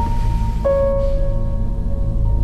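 Dramatic background score: a steady low drone with long held high notes, one more note coming in about two-thirds of a second in.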